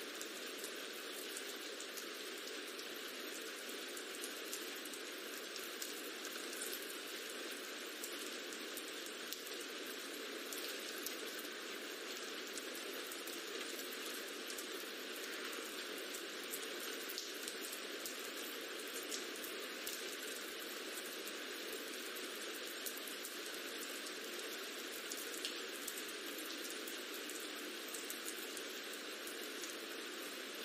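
Recorded rain ambience playing as a steady background: an even hiss of falling rain with faint scattered drop ticks.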